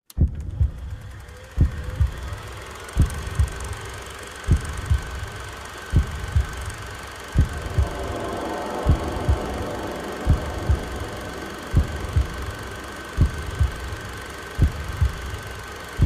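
Slow low double thumps in a heartbeat rhythm, a strong beat followed closely by a weaker one, about one pair every second and a half. They start abruptly out of silence, over a steady high tone and hiss.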